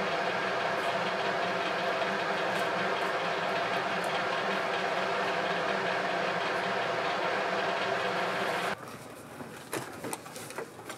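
Steady mechanical drone, like an idling engine, holding an even pitch and level. It cuts off suddenly near the end.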